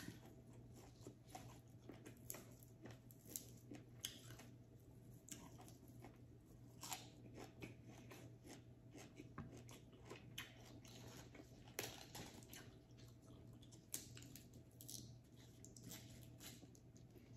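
A person chewing and crunching food close to the microphone, with irregular crisp crunches and a few louder bites standing out.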